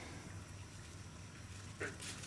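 Low, faint background hiss with one brief soft sound near the end.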